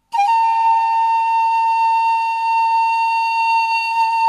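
Soundtrack music: a breathy flute enters suddenly and holds one long, steady high note, with a quick dip in pitch as it starts.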